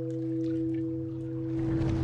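Logo sound design: the ringing tone of a struck bell-like chime, several steady pitches held and slowly fading, with a low rumbling swell building near the end.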